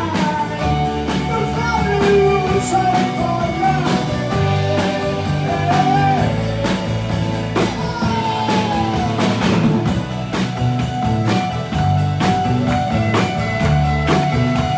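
A live rock band playing a song: a drum kit keeping a steady beat under electric guitar, bass and keyboards, with a singing voice on top.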